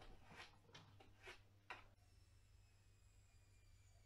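Near silence with a few faint taps in the first two seconds: a husky's paw against a glass door.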